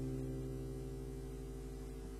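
The last chord of an acoustic guitar ringing out and slowly fading, over a steady low electrical hum.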